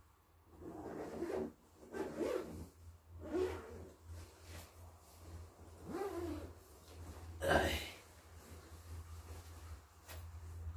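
A man grunting and breathing hard in a series of short efforts as he wriggles out of a down sleeping bag, with the bag's fabric rustling. The loudest burst, a sharp rustle or breath, comes about three-quarters of the way through.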